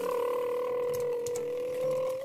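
A steady, whistle-like tone held at one unwavering pitch.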